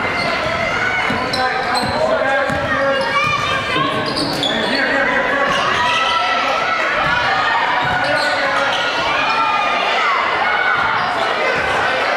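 Basketball being dribbled on a hardwood gym floor, under continuous overlapping voices of players and spectators talking and calling out in the gym.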